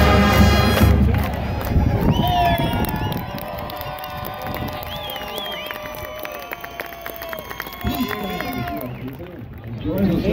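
A marching band's brass and percussion finish a piece about a second in, then the stadium crowd cheers and claps, with scattered shouts.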